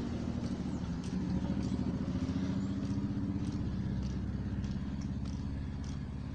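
Motorcycle engine running nearby: a steady low drone with rapid firing pulses, its upper note dropping away about halfway through.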